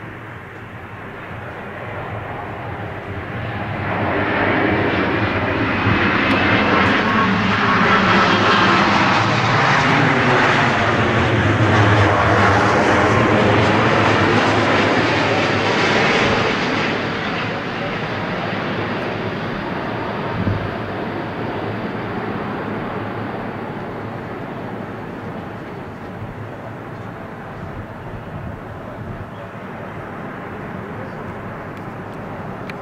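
Boeing 787 Dreamliner airliner's jet engines on final approach with gear down, passing low: the rush grows about three seconds in, is loudest for some ten seconds with sweeping tones, then fades to a lower rumble as the jet descends to the runway.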